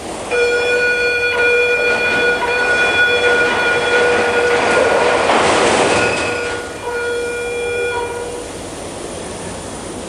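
A train passing, its horn sounding one long steady blast of about four seconds. The rush of the train swells past in the middle, and a shorter second horn blast follows.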